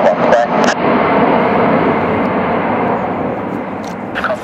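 Boeing 747SP's four Pratt & Whitney JT9D turbofans at takeoff thrust as the jumbo lifts off: a loud, steady rush of jet noise that eases a little toward the end.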